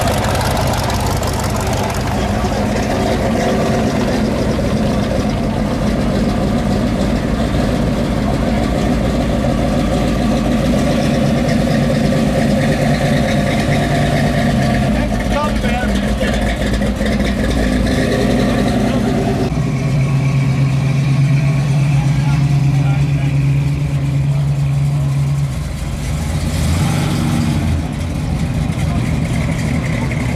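Classic cars driving slowly past one after another, their engines running at low speed. A deeper, steady engine note stands out for several seconds after the middle, then changes as the next car comes by. People talk in the background.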